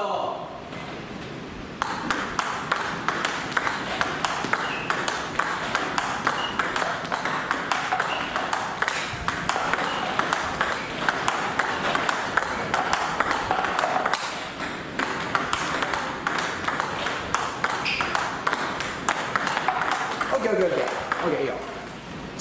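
Table tennis balls struck by rubber rackets and bouncing on the table in a fast, steady run of sharp clicks: a multi-ball drill in which the player hits the fed balls back with plain forehand and backhand meet strokes. The clicking starts about two seconds in and stops shortly before the end, when voices come in.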